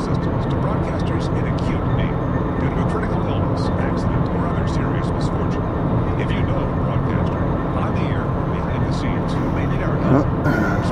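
Steady road and engine noise of a car driving at speed, heard from inside the cabin, with a voice from the car radio talking faintly underneath.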